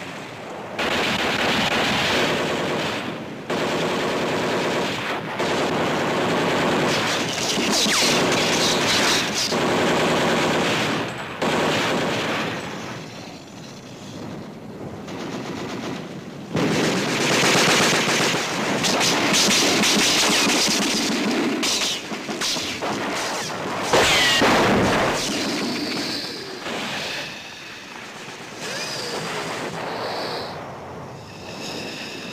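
Battle soundtrack of long bursts of machine-gun fire, broken by a quieter lull midway, with a sharp bang late on.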